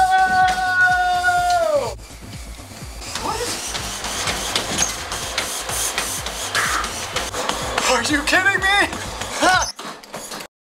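A man screaming one long, loud, high held note that falls away at about two seconds, to slow a treadmill rigged to run slower the louder he screams. Then his feet pound quickly on the running treadmill belt, with a few short breathless yells near the end.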